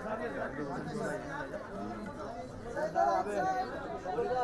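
Several people talking at once: overlapping chatter of voices, no single speaker standing out.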